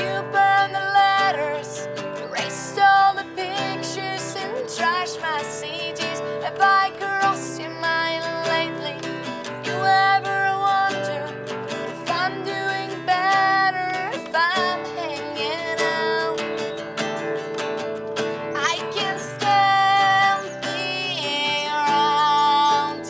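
A woman singing to her own acoustic guitar, strumming chords under long held sung notes.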